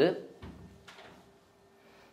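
A man's voice trails off, then a pause with a soft low thump about half a second in and a faint click near one second, over a faint steady hum.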